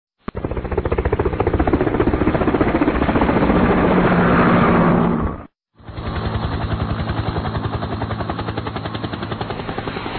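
Fireworks going off in a rapid, continuous crackle of bangs. It cuts off briefly about halfway through, then carries on.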